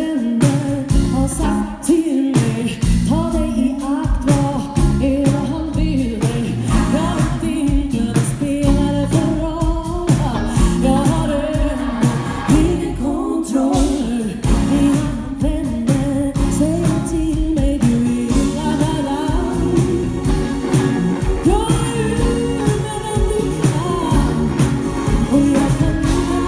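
Live funk-soul band: a woman singing lead in Swedish over drums, bass, keyboards and guitar, with a steady beat, heard from the audience in a concert hall.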